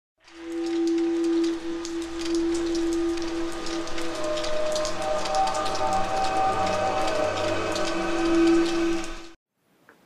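Intro sound bed for a logo animation: one long held synth note with higher notes joining around the middle, over a dense rain-like crackle. It fades in near the start and cuts off suddenly about half a second before the end.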